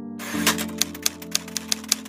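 Typewriter-style key clicks, irregular and several a second, matching on-screen text being typed out letter by letter, over a sustained background music pad.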